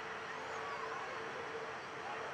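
Outdoor ambient noise: a steady hiss with a faint steady hum, and a few faint, short whistle-like calls.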